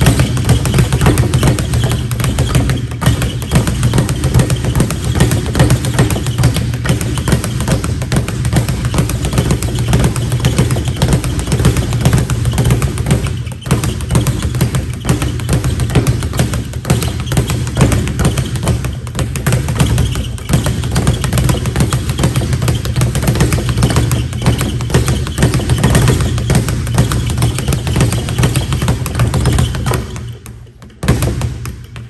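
Light leather speed bag punched in a fast, continuous rhythm, rattling off the wooden rebound board on its swivel, with a short break about halfway through.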